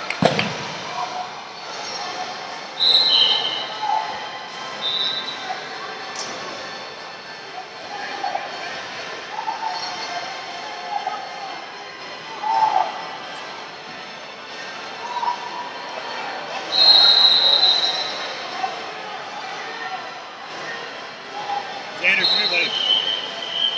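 Echoing sports-hall ambience: indistinct voices and chatter throughout, a sharp knock right at the start, and several short high-pitched squeaks. These squeaks are typical of wrestling-shoe soles on the mats; the longest and loudest comes about three-quarters of the way through.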